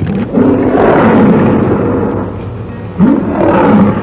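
A big cat's roar, used as a sound effect, heard twice: one long roar, then a shorter one starting about three seconds in.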